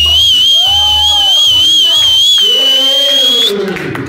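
A high whistle with an even, regular wobble in pitch, held for about three and a half seconds before cutting off suddenly, with voices calling out beneath it.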